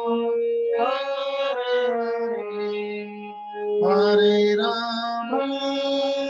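Harmonium playing a slow melody in held reed notes over a sustained lower note, louder for a stretch about four seconds in.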